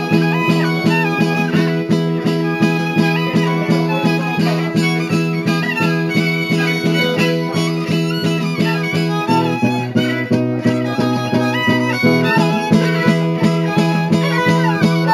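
Traditional Oaș dance music: a high fiddle (cetera) melody over steady, rhythmically strummed chords on the zongora. The accompanying chord shifts lower about nine seconds in and returns about three seconds later.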